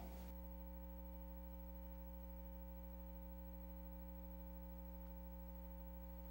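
Steady electrical mains hum, a low buzz with a stack of even overtones, unchanging throughout.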